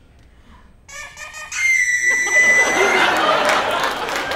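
A high whistle tone that starts with a short toot, then holds steady for about a second. Audience laughter swells up after it.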